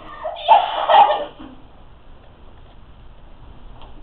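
A teenage girl's voice crying out in distress for about a second, in two loud pulses, then low room tone.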